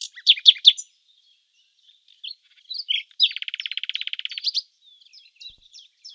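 Songbird singing, played as the nightingale's song: a few quick high chirps, a short pause, then a rapid trill of some twenty notes a second lasting about a second, followed by faint scattered chirps.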